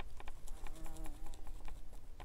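A fly or similar flying insect buzzing briefly past, about a second long, over light scattered clicks and taps.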